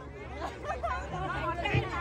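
Speech: several people chatting at once close by, over a low steady hum.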